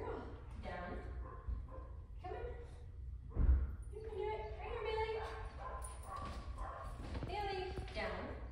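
Low, indistinct voice sounds, speech-like and pitched, through most of the stretch, with a single dull thump about three and a half seconds in that is the loudest moment.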